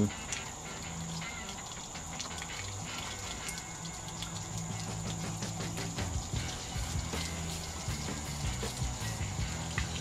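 Water from a garden hose running through a Jeep radiator being flushed and splashing out onto the ground, with background music underneath.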